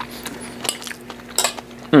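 Metal fork clinking against a metal bowl: a few short, sharp clinks, the loudest about one and a half seconds in.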